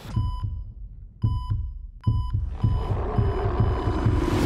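Hospital patient-monitor beeps over a deep, heartbeat-like low pulse. The beeps come slowly at first, then quicken from about halfway, as a swell of noise builds toward the end.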